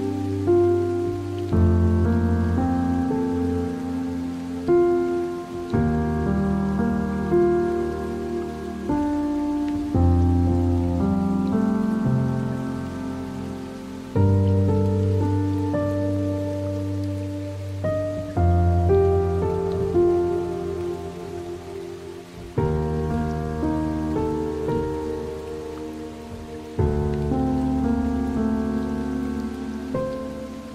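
Slow piano music over steady rain. A new chord is struck about every four seconds and left to fade, under a constant hiss of rainfall.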